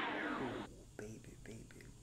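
Background music that cuts off less than a second in, followed by a man whispering softly, with a few faint clicks.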